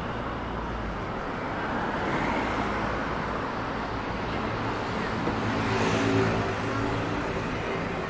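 City street traffic: a steady hum of cars and engines, with one vehicle's engine drone swelling to its loudest about six seconds in and then fading.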